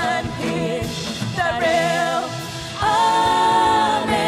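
A church worship team of several singers singing an upbeat gospel-style praise song over instrumental backing, ending the phrase on one long held note near the end.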